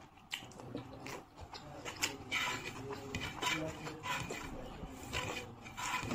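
Close-miked mouth sounds of eating rice and curry by hand: wet chewing and lip-smacking with irregular short smacks and sucks as fingers are licked.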